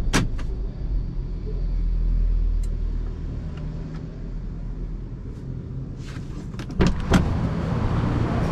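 Car cabin sounds over a low steady rumble, with a click at the start. Near the end come two loud knocks as the car door is opened, then a steady rush of outside noise once the door is open.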